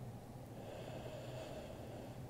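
A faint, slow breath through the nose, rising about half a second in and fading near the end, over a low steady room hum.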